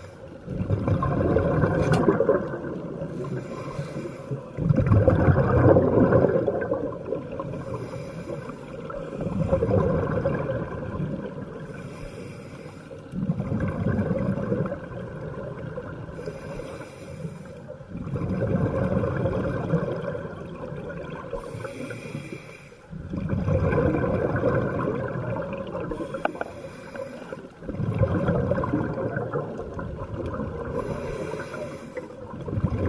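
Scuba diver breathing through a regulator underwater: a short hiss on each inhale, then a longer bubbling rumble on each exhale. The cycle repeats evenly about every four to five seconds, about seven breaths in all.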